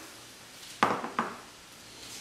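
Two short, sharp knocks less than half a second apart, the first the louder, with a brief ring after it.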